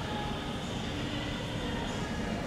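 Steady, even rumbling background noise with a few faint thin tones over it, the ambient hum of a cruise ship's open-air promenade.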